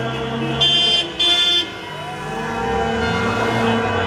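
Car horns honking in a slow-moving line of passing cars, with one long, loud blast from about half a second to a second and a half in, over the running engines of the cars.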